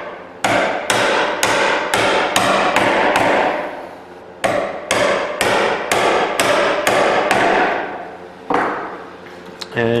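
Mallet striking a bench chisel about twice a second, chopping the shoulder of a pine tenon down to a knife line. Each strike rings briefly. There is a short pause a little before halfway, and the strikes stop about a second and a half before the end.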